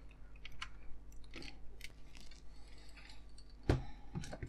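Small hand screwdriver tightening a screw into the metal chassis of a die-cast scale model, with faint scratchy clicks and creaks from the screw and tool, and one sharper click near the end.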